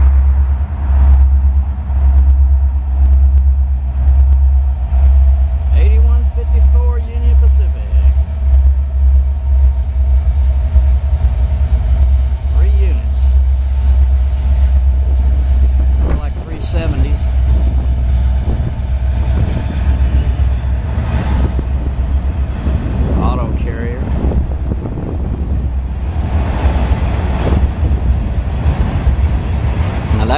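Union Pacific freight train passing close by: three diesel locomotives, then freight cars rolling past on the rails, with a heavy low rumble throughout.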